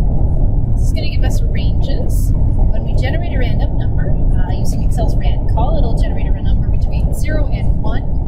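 Indistinct talking by a person, heard in short broken stretches over a loud, steady low rumble of background noise.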